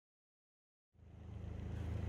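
Silence for about the first second, then a low steady hum fades in and grows slowly louder.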